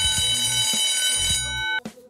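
Time's-up alarm sound effect marking the quiz countdown reaching zero: a loud ringing alarm tone that starts at once and cuts off abruptly near the end, over background music.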